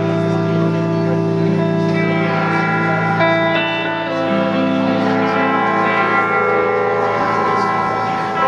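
Two electric guitars played live, ringing out long sustained notes that overlap into a slow drone, with reverb; single notes change every second or so, with no strummed attacks.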